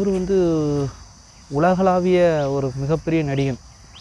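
A goat bleating three times in long, wavering calls, over a steady high-pitched insect chirr.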